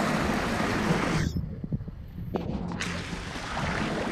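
Rushing wind noise buffeting an action camera's microphone. A little over a second in, it turns to a muffled low rumble for about a second and a half, then comes back.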